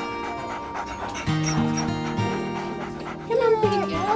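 A boxer dog panting under background music. She is injured with a torn lung. Near the end there is a brief wavering vocal sound that falls in pitch.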